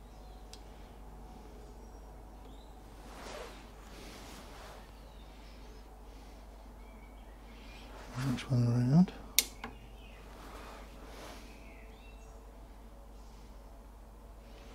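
Quiet workshop room tone with faint handling of the milling cutter on the cutter grinder. About eight seconds in there is a brief murmur of a man's voice, then a single sharp click.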